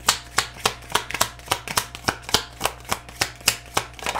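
A deck of oracle cards being shuffled by hand: crisp card clicks in a steady rhythm, about three or four a second.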